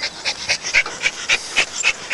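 A dog panting rapidly, about six or seven quick breaths a second.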